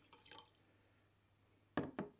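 Water from a glass jug trickling into a glass jar as the pour ends, then two short sharp drips near the end as the last drops fall into the water.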